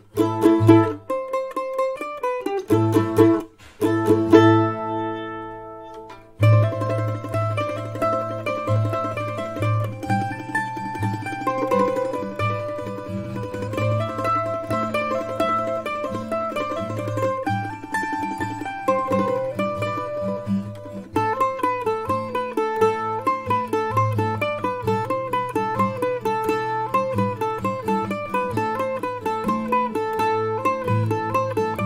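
Mandolin playing a heavy-metal tune. A few stop-start strummed chords come in the first seconds, one left to ring out and fade. From about six seconds in come tremolo-picked sustained notes, and the last third is a quicker picked single-string riff.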